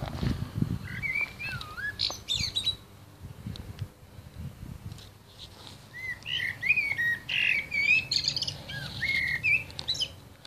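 A songbird singing whistled, swooping phrases in two spells, first briefly near the start and then a longer run in the second half. Under it runs a low steady rumble, with a few dull knocks right at the start.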